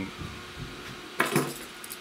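Brief clatter about a second in: a duplex electrical receptacle is picked up from a pile of others, its plastic body and metal mounting strap clinking.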